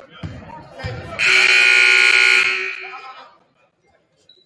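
Basketball scoreboard horn sounding one long, steady blast of about a second and a half, loud and dying away in the gym. Before it a basketball bounces twice on the hardwood floor.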